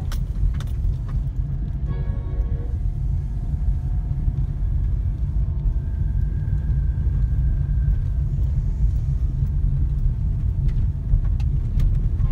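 Steady low road and engine rumble heard inside a moving car's cabin.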